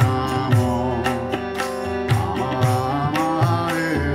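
Kirtan music: a harmonium holding sustained chords over a tabla beat, the drum strokes coming about twice a second.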